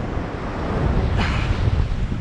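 Strong wind buffeting the microphone, with the wash of surf behind it and a brief louder rush about a second in.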